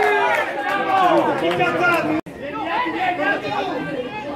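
Several men's voices shouting and talking over one another, cut off abruptly just over two seconds in, with more overlapping voices straight after.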